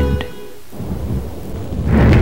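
Music fades out about half a second in, then a low rumbling noise, thunder-like, swells up through the rest of the moment.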